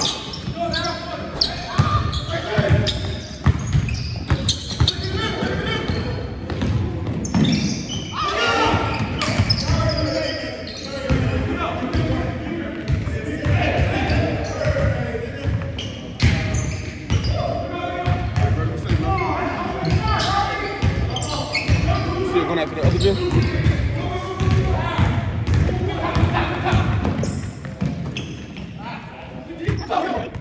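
A basketball bouncing on a hardwood gym floor as players dribble and run, mixed with indistinct shouting from the players, all echoing in a large gym.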